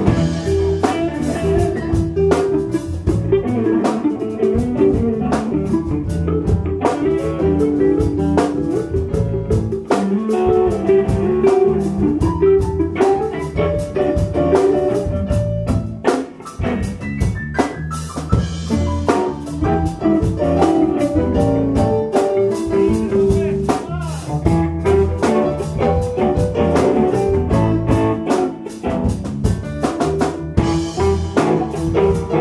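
Live blues band playing: electric guitars, electric bass, keyboard and a drum kit keeping a steady beat.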